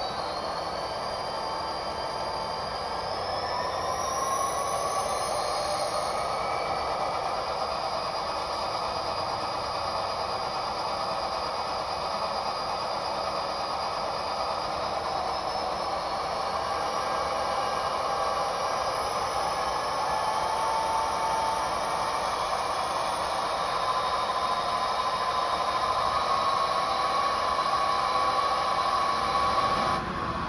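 Sound-equipped HO-scale Southern Pacific diesel locomotive models running, their sound decoders playing diesel engine sound through small speakers, with a whine that climbs in pitch over the first few seconds, over a rattle of wheels on track.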